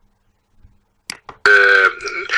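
Near silence for about a second, then a man's voice starts up with a short hiss and a drawn-out, steady-pitched hesitation vowel about halfway through.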